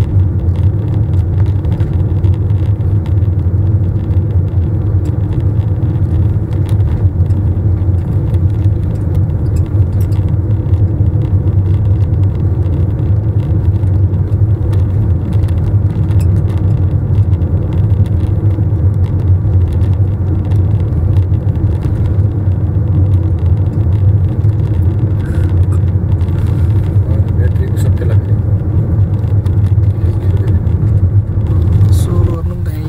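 Steady low rumble of a car driving at speed, heard from inside the cabin: road and engine noise with no distinct events.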